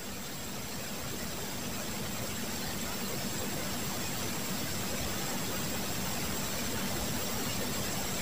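Steady background hiss with a faint low hum and a thin high whine, growing slowly louder with no distinct events. This is room tone and microphone noise.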